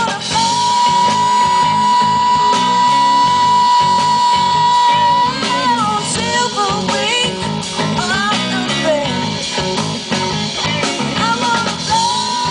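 Live rock band playing at full volume: electric guitars, bass guitar and drum kit, with a long held high note lasting about five seconds, followed by a wavering, bending melody line.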